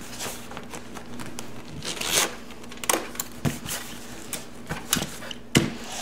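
Leather motorcycle saddlebag being handled and fitted over the rear fender: irregular rustling and scraping of the leather, with a few sharp clicks near the end.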